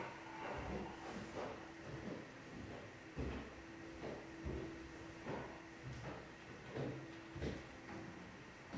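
Irregular knocks and thumps, roughly one every half-second to second, over a low steady hum that comes and goes.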